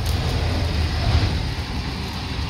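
Butter, olive oil and leeks sizzling steadily in an Instant Pot's inner pot on the sauté setting, over a steady low rumble.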